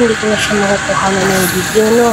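A person's voice over steady street traffic noise.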